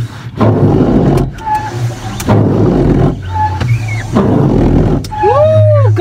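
Car windscreen wipers running, the blades sweeping back and forth across the glass about once a second, with a short squeak on every second stroke, over a steady low hum. Near the end there is a short rising-and-falling vocal sound.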